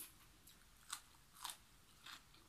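Faint crisp crunches of raw vegetables being bitten and chewed: a sharp snap right at the start, then two more crunches about a second in and around halfway through.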